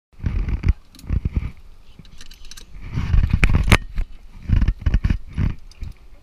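Irregular, muffled rumbling bursts of noise on an action camera's microphone, heaviest in the low end, with a couple of sharp clicks in the middle.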